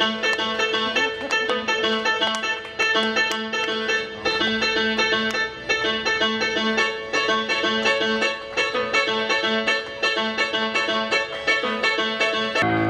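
Live instrumental music from accordion and keyboard playing an original piece. Quick plucked, harpsichord-like keyboard notes run over a steady held tone, with a lower note repeating in a bouncy rhythm.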